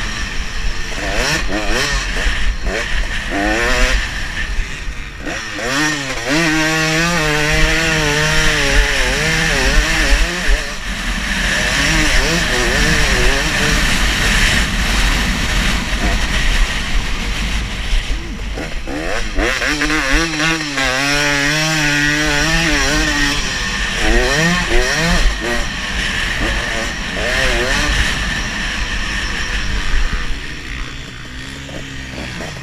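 Dirt bike engine revving up and down while ridden, its pitch rising and falling over and over with the throttle and gear changes. Wind rumbles on the microphone throughout.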